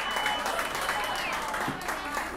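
Small audience applauding after a song, with a long high whistle that holds steady and then drops away just over a second in, and voices talking.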